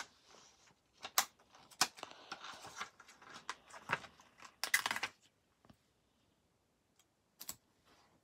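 Sticker sheets and paper being handled: a run of crinkly rustles and sharp clicks for about five seconds, then a pause and one more short crackle near the end.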